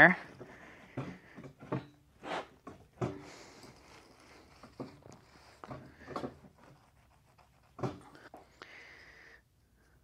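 Hands packing moist potting mix into a metal soil blocker in a plastic tub: irregular soft crunching, scraping and pats of soil, at a low level.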